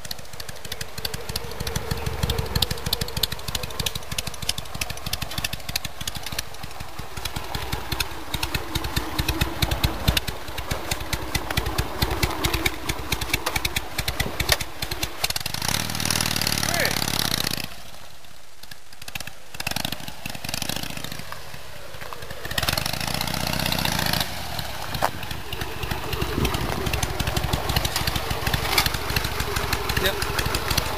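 Harley-Davidson Sportster's air-cooled 45-degree V-twin running, its firing strokes loud and dense as the bike is ridden, dropping to a quieter stretch a few seconds past the middle, then running close by again.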